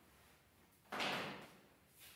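A whiteboard duster wiping across the board: one short rubbing swish about a second in.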